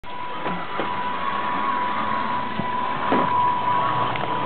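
Electric drive motor of a radio-controlled scale Land Rover Defender D90 running with a steady high whine as the truck drives, over a constant hiss.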